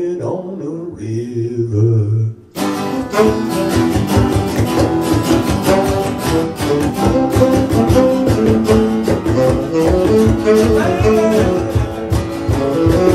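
Live music: a man singing with an acoustic-electric guitar. About two and a half seconds in, a fuller accompaniment with a steady, busy rhythm comes in and carries on.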